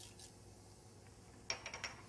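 Near silence, then about one and a half seconds in a quick run of light metallic clicks with a faint ring, as the last urad dal is tapped out of a small metal measuring cup into the pan.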